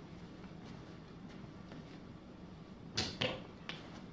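Mostly quiet room with a few faint small clicks, then a couple of short sharp clicks and a brief rustle about three seconds in, with one more small click just after: small handling noises.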